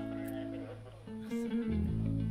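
Electric guitar and bass guitar playing sustained notes through the stage amplification during a band sound check. The notes die away a little past a second in, and a new low bass note comes in near the end.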